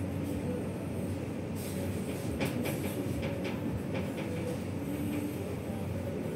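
Steady low rumbling room noise in a cafe, with a few faint clicks and short faint tones over it.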